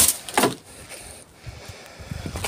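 A short knock and rustle as a plastic bag is dropped into a plastic wheelie bin, about half a second in, followed by quiet handling noise.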